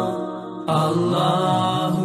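Background music of a solo vocal chant with long held, wavering notes; a new, louder phrase comes in a little under a second in.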